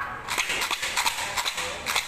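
Clear plastic bag crinkling and crackling as it is handled, a rapid irregular run of crackles.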